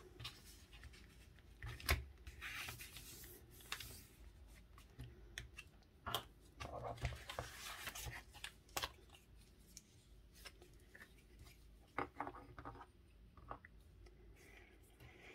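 Faint paper handling: sheets of patterned craft paper being shifted and pressed down by hand, with irregular small taps and short scratchy rustles as a glue stick is picked up and used.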